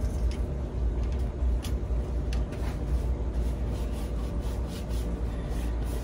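Steady low rumble, with a few faint taps and rubs from a hand working acrylic paint along the edges of a canvas.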